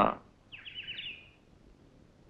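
A small bird chirping: a quick run of about half a dozen short, high, falling notes, starting about half a second in and lasting under a second.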